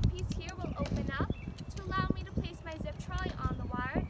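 Metal safety-lanyard clips and a zip-line trolley clicking and clinking in the hands as they are handled, with a woman's voice over them.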